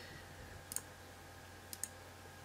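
A few faint computer mouse clicks: one about a third of the way in and a quick pair near the end, over a steady low hum.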